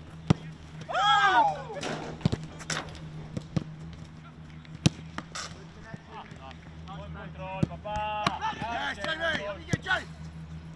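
Footballs being struck hard in a shooting drill: about eight sharp, separate kicks and thuds scattered through, under a steady low hum. Players and coaches shout, briefly about a second in and again near the end.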